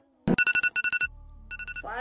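Electronic alarm beeping as a wake-up signal: quick runs of short, high beeps, a short pause, then another run.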